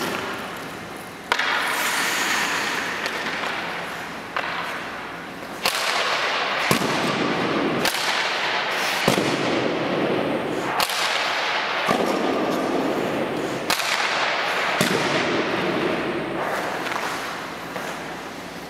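Composite hockey stick (Bauer JT19) firing pucks in a series of about ten sharp cracks, a second or two apart, each one ringing out in a long echo through the empty ice arena.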